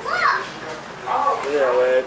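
Voices of a group of people talking and exclaiming, with a high voice rising and falling sharply just after the start.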